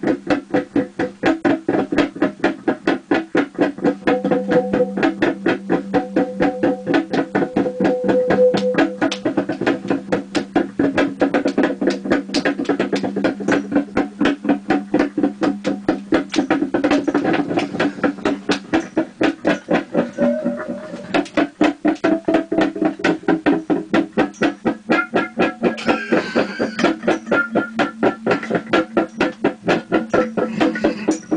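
A fast, steady, machine-regular beat with a sustained pitched backing line, played through a karaoke machine.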